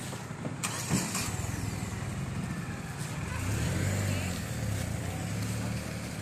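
Engine of a small box-body van running as it pulls away down the road, its hum swelling louder about midway and then easing.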